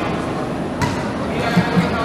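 Reverberant sports-hall ambience during a wheelchair basketball game, with players' voices calling out. There is a sharp knock just under a second in and a few short thuds near the end.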